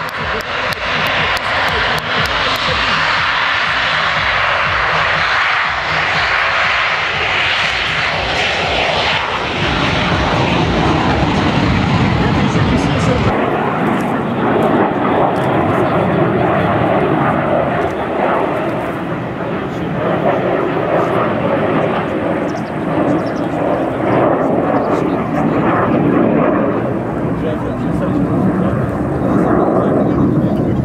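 Yak-130 jet trainers' twin turbofan engines running at high power, heard as a loud, continuous jet noise that first accompanies an aircraft on the runway and then a pair of the jets flying overhead. About a third of the way in the sound changes abruptly to a duller, deeper rumble.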